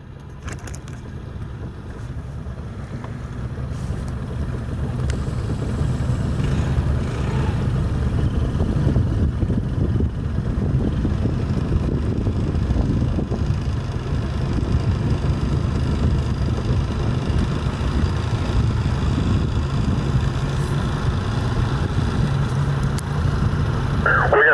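Boat engine running steadily at slow speed, a low rumble that grows louder over the first several seconds and then holds.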